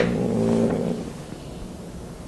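A man's drawn-out, low hesitation hum, an 'mmm' held with closed lips while he searches for his next words. It fades out after about a second, leaving quiet room tone.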